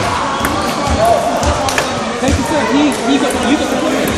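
Table tennis balls clicking irregularly off bats and tables, from several games at once, over the chatter of many voices in a large sports hall.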